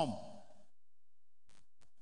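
A man's voice trailing off at the end of a word and dying away in the hall, then a pause, with a faint short intake of breath near the end before he speaks again.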